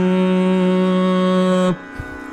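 A male Carnatic vocalist holding one long, steady note in raga Ananda Bhairavi, which cuts off near the end and leaves a soft tanpura drone.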